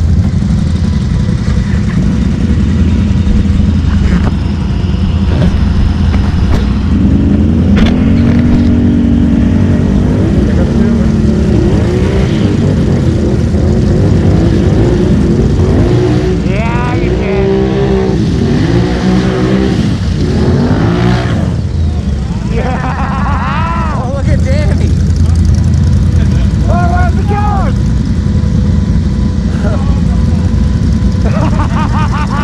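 ATV engine revving hard as it drives through deep mud, the pitch sweeping up and down with the throttle through the middle of the run.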